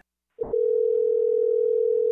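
Telephone ringback tone from an outgoing call: one steady ring starting about half a second in and lasting nearly two seconds, then cutting off.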